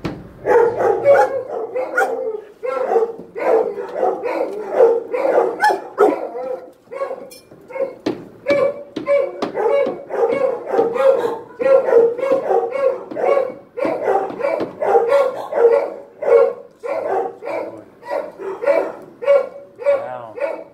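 Dog barking repeatedly at close range, about two to three barks a second, with a couple of brief pauses.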